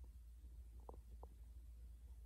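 Near silence: a low steady hum, with two or three faint soft ticks about a second in from a wooden stick being rolled through sugar on a ceramic plate.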